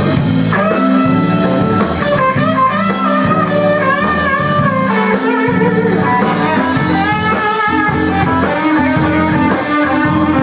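Live blues band playing an instrumental passage: a Telecaster-style electric guitar plays a lead line with bent notes over the drum kit.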